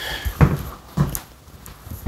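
Footsteps as a man gets up from a desk chair and walks away: two heavy steps about half a second apart, the first the louder.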